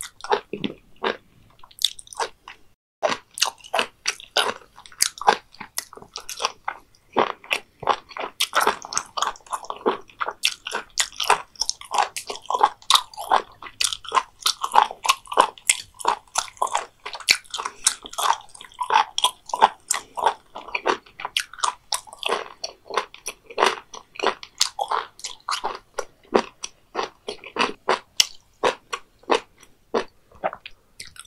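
Close-miked chewing of raw beef omasum and raw beef liver: a fast run of crisp, crunchy bites mixed with wet, squishy mouth sounds, several a second.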